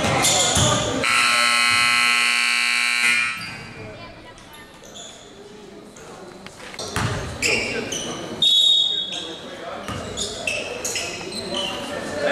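Gymnasium scoreboard horn sounding one steady buzzing blast of about two seconds, starting about a second in, as the game clock reaches zero to signal the end of the period. After it come scattered ball bounces and voices echoing in the large hall.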